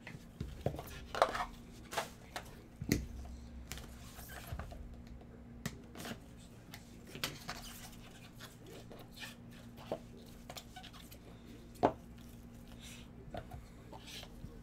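Gloved hands handling small cardboard trading-card boxes and cards: scattered taps, clicks and rustles as boxes are opened, slid and stacked, with the sharpest knocks about a second in and near the end, over a faint steady hum.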